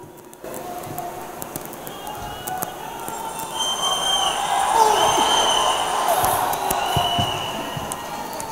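Soft background music under the murmur of a large hall's crowd, swelling in the middle and easing near the end, with a few held high notes and scattered light clicks.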